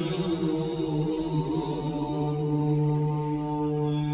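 A man's voice chanting slowly in Quranic recitation style, rising and falling at first and then holding one long steady note from about halfway through.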